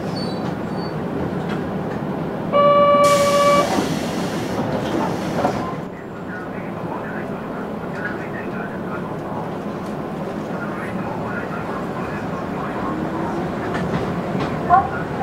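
Kobe Electric Railway 1100-series electric train sounding one short horn blast about a second long, followed by a hiss of air lasting a couple of seconds as it starts to pull away. After that comes the steady low rumble of the train running slowly over the tracks.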